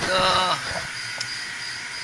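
A man says one short word, then a steady hiss runs on with no strokes or changes.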